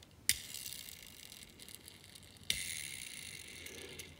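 Wheels of a Hot Wheels 1968 Mercury Cougar die-cast car flicked twice by finger. Each flick is a sharp click followed by a faint whir that fades as the wheel spins down on its dry, unlubricated axle.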